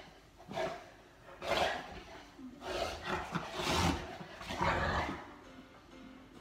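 Boerboel growling in play in about five short bouts while mouthing its owner's hand.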